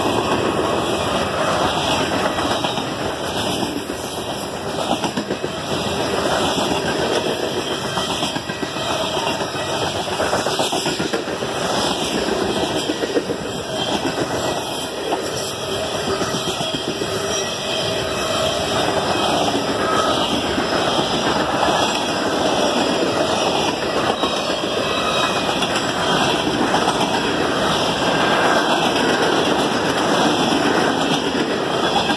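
Freight cars of a passing train rolling by on steel wheels: a steady noise of wheels on rail, with faint clicks as the wheels pass over the rail joints.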